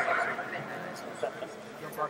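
A brief loud shout or whoop from a person right at the start, over low background talk among a crowd of onlookers.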